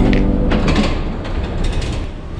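The tail of a song dies away, then a Kia K5 is heard driving: steady road and cabin noise with several short clicks and rattles.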